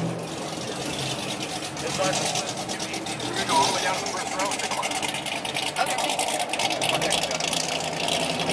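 A Ford Mustang's engine running at low speed, heard from inside the cabin, with a fast, even pulsing rattle over a low hum. Faint voices sit in the background.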